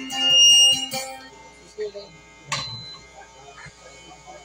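Live music with an acoustic guitar ends about a second in, leaving low murmur and a single sharp knock near the middle.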